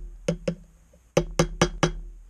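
Hammer tapping a steel pin punch to drive out the ejector pin of an AR-15 bolt, sharp metallic taps that ring briefly. Two taps, a short pause, then four quick taps at about four a second.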